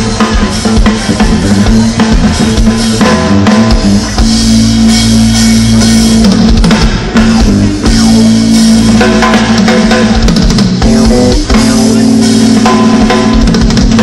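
Live band music: a Sonor drum kit played throughout, with electric guitars through amplifiers holding long sustained notes underneath.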